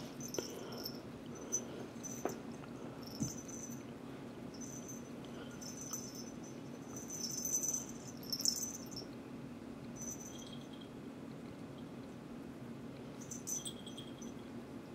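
Cats playing with a toy mouse on a string: faint soft taps and brief high-pitched rustling sounds come and go, busiest about halfway through, over a steady low hum.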